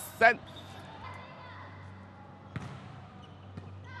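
A volleyball struck once, a single sharp hit about two and a half seconds in, over the low steady background of a sports hall, with a few faint smaller knocks near the end.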